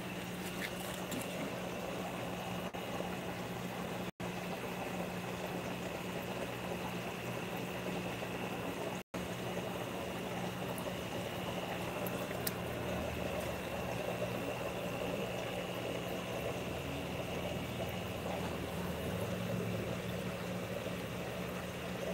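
Aquarium pumps humming steadily with water bubbling and trickling in the tanks. The sound cuts out for an instant twice, about four and nine seconds in.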